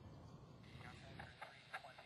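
Near silence with faint, indistinct voices in the background, most noticeable in the middle.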